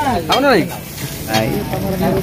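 Food frying and sizzling in a pan at a street food stall, a steady crackling hiss. A voice rises and falls over it briefly at the start and again shortly after the middle.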